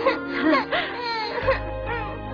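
A young girl's voice crying in high, wavering whimpers and sobs over background music.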